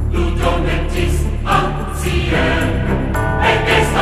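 Background music with a choir singing.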